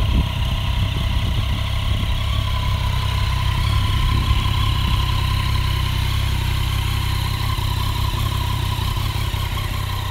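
2016 Yamaha FJ-09's 847 cc inline-three engine idling steadily.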